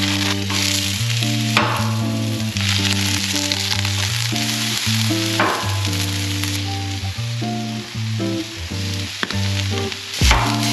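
Sliced onions and peppers frying in oil on a hot flat-top griddle: a steady sizzle that flares up twice, about one and a half seconds in and again past the middle. Background music plays under it.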